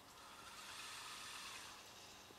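Katana robotic arm's joint motors running faintly as the arm moves, a soft whirring hiss that swells and fades over about two seconds.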